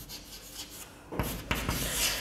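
Chalk rubbing and scraping on a blackboard as a word is written, starting a little over a second in.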